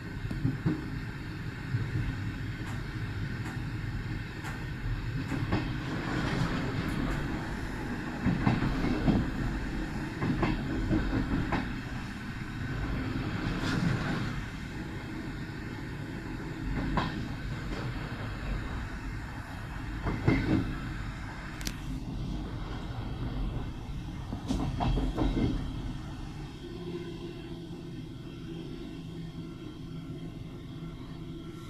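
Railway carriage rolling along the track with a steady low rumble, its wheels clattering in short groups every few seconds as they cross rail joints and points.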